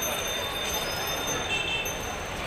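Busy market-street ambience: a steady mix of auto-rickshaw and cycle-rickshaw traffic and crowd noise, with a short high-pitched tone about one and a half seconds in.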